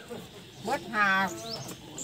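A person's voice speaking, with one drawn-out, level-pitched vowel about a second in.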